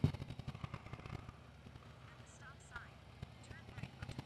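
Motorcycle engine dropping to a faint low idle as the throttle closes and the bike rolls on, with a few faint chirps about halfway through; the engine picks up again near the end.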